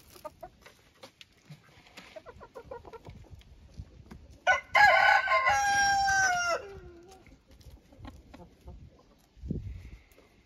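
Chickens clucking softly, then a rooster crows once about halfway through: one call of about two seconds whose last note falls away.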